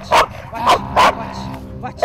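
A protection-trained dog barking repeatedly in sharp barks on its handler's "watch" command: the dog has been switched on to guard her against the man in front of it.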